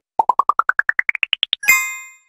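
Animated-logo sound effect: a quick run of about a dozen short pops climbing steadily in pitch, then a single bright metallic ding that rings and fades out.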